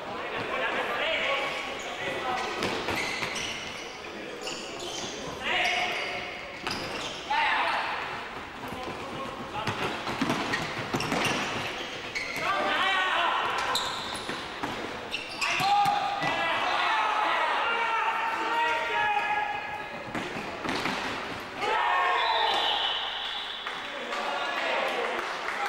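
Futsal ball being kicked and bouncing on a sports hall floor, repeated sharp thuds that echo in the hall, mixed with shouts from players and spectators throughout.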